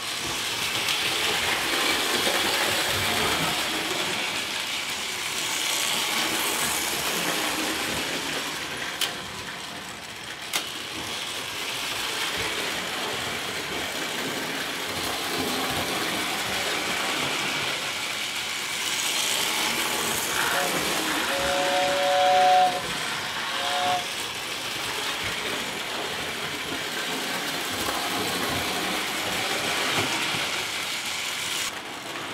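O-gauge toy electric train running around a tinplate track layout, a steady rattling hum of the motor and wheels on the rails, with two sharp clicks about a third of the way in. About two-thirds of the way in its whistle sounds in two steady tones together for a couple of seconds, then once more briefly.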